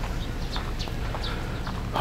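Footsteps of a person walking on pavement, about two or three steps a second, over a low steady rumble of outdoor background noise.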